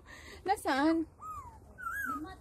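An unseen small animal whining in the undergrowth: a short pitched cry about half a second in, then thin high cries that slide down and back up in pitch.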